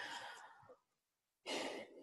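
A woman's two soft breaths between sentences: one at the start lasting under a second, then after a short silence another about a second and a half in.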